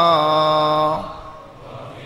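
A man's voice holding one long chanted note in Arabic religious recitation, sinking a little in pitch, then ending about a second in. A faint hall ambience follows.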